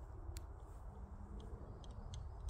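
Wind rumbling on the microphone outdoors, with one faint sharp click about half a second in.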